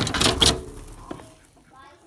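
A hen flapping her wings hard and striking the glass of a kitchen door, a loud burst of wingbeats and knocks in the first half second that then dies away.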